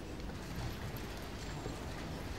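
Ambience of a large, hard-walled reading room: a steady background hush with scattered light clicks and knocks.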